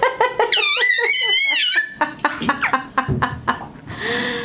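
A baby babbling in quick repeated syllables, then giving a long high-pitched squeal that wavers up and down for over a second, followed by more short babbling sounds.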